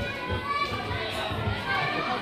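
Indistinct chatter of many voices, children among them, in a large gymnasium hall.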